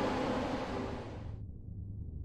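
A rushing noise that abruptly loses its upper part about one and a half seconds in, leaving a low rumble.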